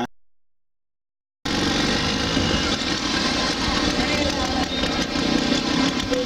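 After a second or so of dead silence, a motorcycle engine idles steadily close by, starting abruptly about a second and a half in.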